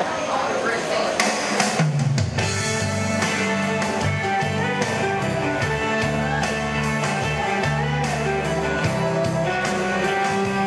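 Instrumental intro of a country song played by guitar, bass and drums, starting about two seconds in after a moment of voices and room noise.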